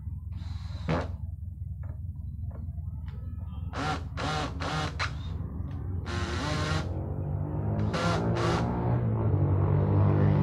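Cordless drill driving screws into a wooden cupboard-door frame in short trigger bursts: a few quick pulses, one longer run, then two more. Background music fades in and grows louder near the end.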